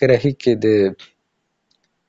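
A man speaking for about a second, then cut off into dead silence.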